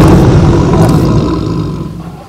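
A male lion roaring: one long, deep roar, loudest at the start and fading away.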